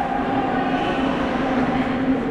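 Ice hockey rink ambience: a steady hum with the scraping of skates on the ice.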